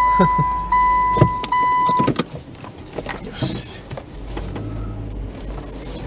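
A car's in-cabin reverse-gear warning beeper sounds a steady high beep in repeated pulses of about three-quarters of a second, which stop about two seconds in as the car comes out of reverse after backing up to turn around. A couple of sharp clicks follow, then the engine runs quietly at low speed.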